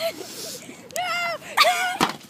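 A girl's two short, high-pitched shrieks, the second louder, as she tips over in the chair.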